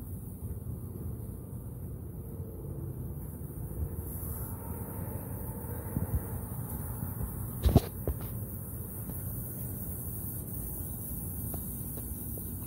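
Steady low background hum and hiss, with two or three short clicks about eight seconds in.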